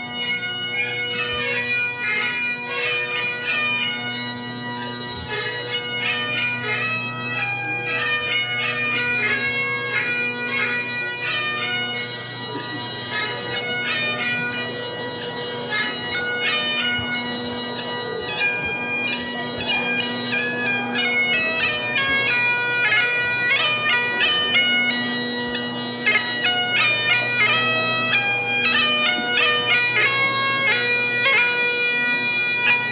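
Great Highland bagpipes played solo: a steady drone under a stepping chanter melody, growing a little louder in the last third.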